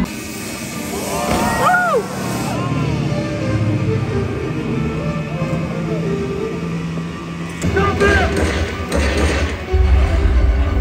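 Loud show soundtrack music playing over a jet ski's engine on the lagoon. Voice-like rising and falling sounds come about a second in and again near eight seconds.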